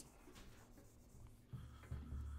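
Faint writing sounds, a pen or marker being written with, and a low hum coming in about a second and a half in.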